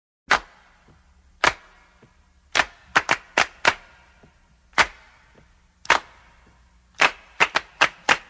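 A run of about a dozen sharp, crisp cracks like claps or snaps, unevenly spaced, with a quick cluster of five in the middle and another cluster near the end, over a faint steady low hum.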